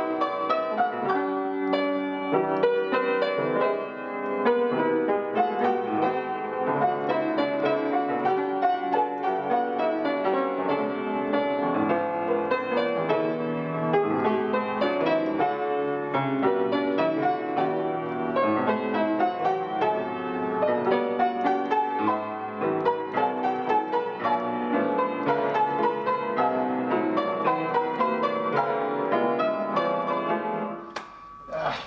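Solo piano playing on a historic C. Bechstein grand: a continuous classical passage of many notes with no pauses.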